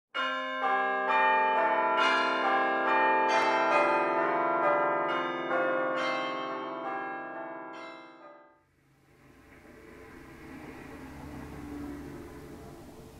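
Church bells pealing, many overlapping strikes ringing on together, then fading away at about eight and a half seconds. A faint low hum and hiss follows.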